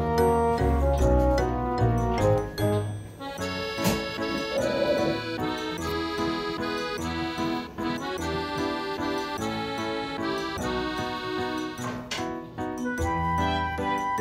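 Light background music: a melody of held, stepping notes over a bass line.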